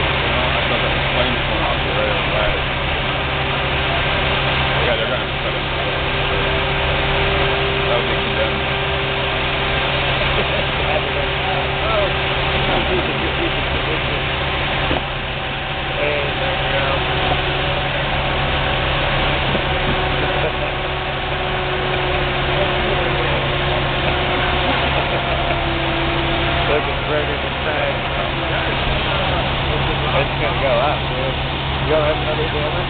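Fire trucks' diesel engines running at a steady idle, a constant low drone throughout, with faint distant voices over it.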